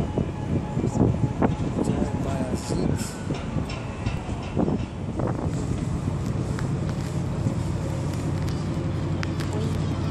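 Outdoor city ambience: a steady low rumble of distant traffic with wind, and indistinct voices of people close by during the first half.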